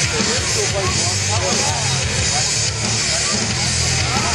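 Beach crowd chatter over a steady low rumble and hiss.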